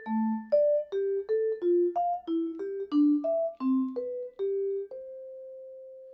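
Musser vibraphone played with four mallets: a run of about a dozen notes with wide leaps between them. Each note is cut short as the next is struck, because the mallet that played it damps the bar ('touch tone' mallet dampening). The last note, about five seconds in, is left to ring and slowly dies away.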